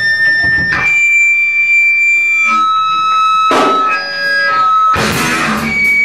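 Rock band in a small room: an electric guitar holds single high ringing tones that change pitch twice, set against loud crashing band hits about a second in, at about three and a half seconds and at five seconds.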